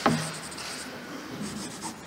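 Pens scratching on paper as two people sign documents at a table, with a sharp tap right at the start.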